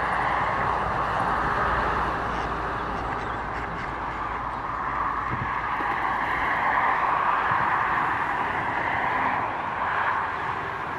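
Steady outdoor noise of distant road traffic, swelling and easing slowly, with no clear bird calls standing out.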